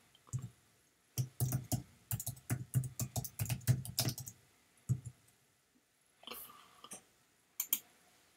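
Computer keyboard being typed on: a quick run of keystrokes for about four seconds, then a few scattered key clicks.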